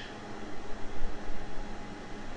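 Steady background hiss, with irregular low rumbling bumps that swell the level between about half a second and a second and a half in.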